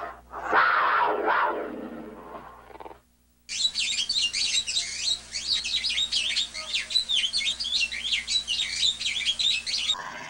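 Recorded animal sound effects from a multimedia program: the tail of a big-cat roar fading out, then after a brief silence a dense chorus of many small birds chirping rapidly and continuously.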